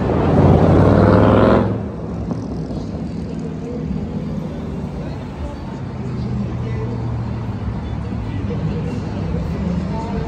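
A car engine revs hard, rising in pitch for about a second and a half, then cuts off suddenly. Steady street traffic follows.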